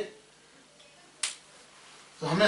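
A single short, sharp click about a second and a quarter in, against quiet room tone.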